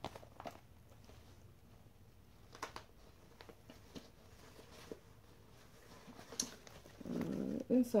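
Faint handling sounds of a leather Coach crossbody handbag: a few scattered light clicks and ticks from its metal hardware and zipper as it is turned over and opened. Near the end a low voice comes in and runs into speech.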